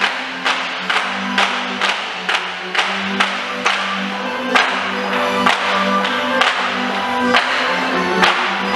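Wooden clogs (Schlorren) held in the hands and clapped together, a sharp clack about twice a second in time with a folk dance tune.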